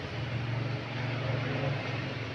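Steady low mechanical hum with a soft, even hiss: room background noise during a pause in talking.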